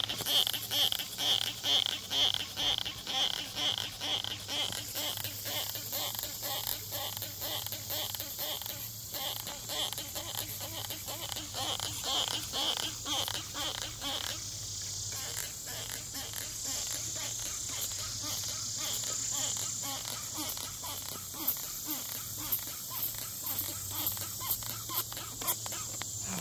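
Insects calling outdoors: a rhythmic pulsed call repeating about two to three times a second, which stops about 14 seconds in, over a steady high-pitched insect buzz, with a low steady hum underneath.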